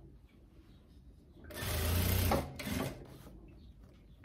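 Jack industrial sewing machine running in one short burst of about a second, starting about halfway through, then a few shorter stitches as it slows and stops.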